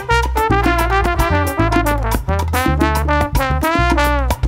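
Brass band playing a Latin, salsa-style tune: trumpets and trombones over a pulsing bass line and steady percussion, with a falling brass phrase near the end.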